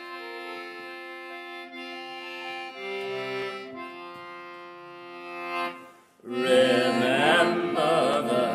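Song intro on a reed instrument such as an accordion, playing slow held chords that change every second or two. About six seconds in, a short gap is followed by a much louder, fuller entry of wavering, vibrato-laden parts.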